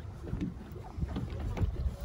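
Wind buffeting the microphone on the open deck of a boat at sea: an uneven low rumble that swells and fades, with a few faint knocks.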